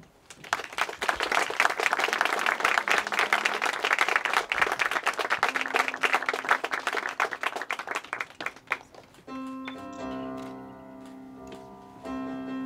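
A crowd of guests applauding for about nine seconds, then fading out as slow piano music with sustained chords begins.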